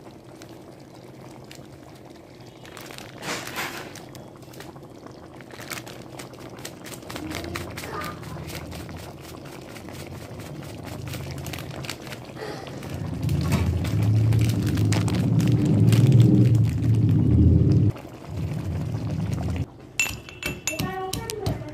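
Thick mutton curry bubbling and crackling in a pan as a metal spatula stirs it. A low rumbling noise builds through the second half, is loudest a few seconds before the end, then drops off suddenly.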